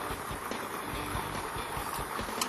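Lottery ball-draw machine mixing its numbered balls: a steady rush with many light, irregular clicks of balls knocking against each other and the chamber, under a faint music bed.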